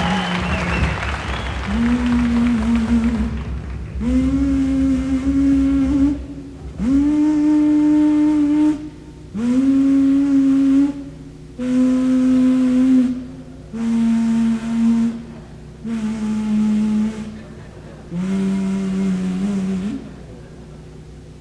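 A single low wind or string instrument in a live jazz group playing a slow phrase of long held notes, about eight of them, each lasting a second or two with short breaks between. The first few slide up into pitch.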